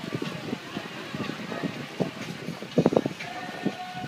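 Bystanders' voices and chatter with a vehicle towing a parade float trailer slowly past, and a louder burst of sound a little before three seconds in.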